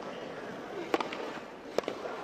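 Two sharp tennis racket strikes on the ball: a serve about a second in, and the return a little under a second later. Both ring out over a faint steady crowd hum.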